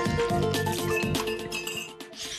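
TV talk show's logo jingle: music that starts to fade out near the end.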